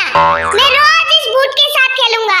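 A high, sped-up cartoon voice talks throughout. A short springy sound effect comes in suddenly just after the start and rings out over about a second.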